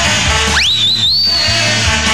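Celtic punk band playing live over a steady beat. About half a second in, a shrill whistle slides up and holds high for about a second.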